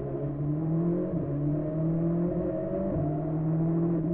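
Skoda rally car's engine heard from inside the cockpit, climbing in revs under acceleration, with two upshifts: one about a second in and another near three seconds.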